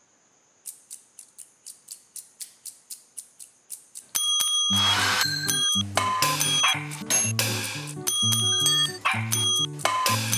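An edited percussion tune made from household objects. It opens with a run of sharp taps, about four a second and growing louder. From about four seconds in, a full beat begins: struck stainless pots and pans ring over a repeating low pitched pattern.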